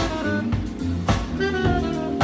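A jazz-fusion band playing live. A Premier drum kit drives it with cymbal-and-snare accents about once a second. An electric bass holds low notes, and a melody line moves in short steps above them.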